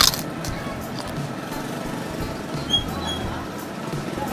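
A sharp crunch as a crisp prawn cracker is bitten at the start, followed by softer scattered chewing crunches over a steady background din.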